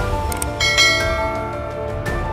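A bright bell-chime sound effect rings out about half a second in and fades away within about half a second, over steady background music.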